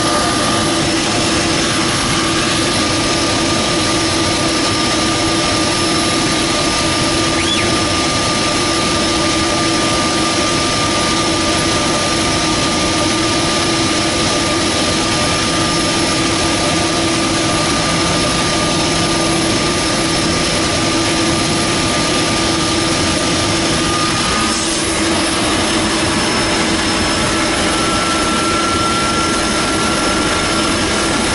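DHC-3 Otter floatplane's engine and propeller running steadily while water taxiing, heard from inside the cockpit. A steady high whine runs over it, breaks off about twenty-four seconds in and comes back a little higher in pitch.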